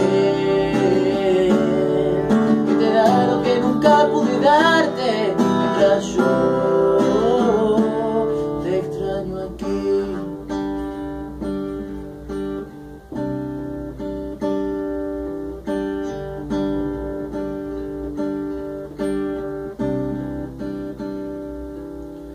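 Acoustic guitar strummed in a steady rhythm as an instrumental passage, growing gradually quieter toward the end. A man's singing voice rides over the guitar for roughly the first eight seconds, then the guitar carries on alone.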